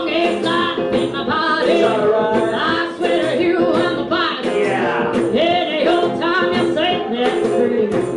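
A woman singing live into a microphone with a band of electric guitar and drums backing her, a steady beat under the vocal line.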